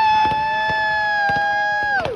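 Whistling firework burning on the ground, giving a steady high whistle with a second, slightly lower whistle joining a moment later. Both hold for about two seconds, then drop in pitch and cut out together.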